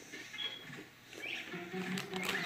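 A crunchy chocolate- and peanut-butter-coated pretzel being chewed with the mouth closed, faint and irregular. About one and a half seconds in, a steady low pitched tone starts.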